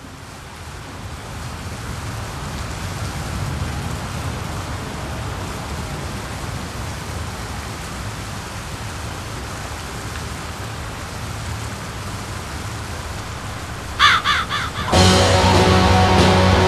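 A steady rushing ambient noise fades in and holds as a track intro, then near the end a few harsh crow caws ring out. About a second before the end the black metal band comes in loud with distorted guitars.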